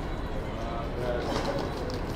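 City street ambience: a steady low rumble of traffic, with a pitched, voice-like sound over it for about a second in the middle.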